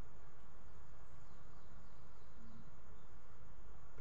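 Steady background noise with a faint, continuous high-pitched whine and no speech.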